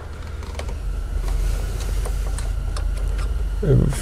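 Faint irregular clicks as a hand screwdriver with a Torx T30 bit backs a screw out of a plastic valve cover, over a steady low hum.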